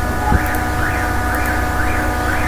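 Steady electrical hum and hiss of a home desktop recording, with one click about a third of a second in. A faint warbling tone rises and falls about twice a second above the hum.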